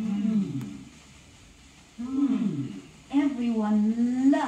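Wordless voices on a vintage children's story record: two drawn-out falling vocal calls, then a long held sung note leading into a song.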